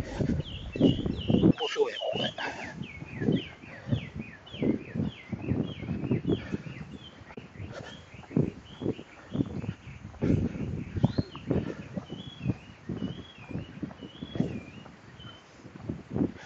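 Footsteps on an asphalt road at a walking pace, about two steps a second, while birds chirp quickly and repeatedly throughout.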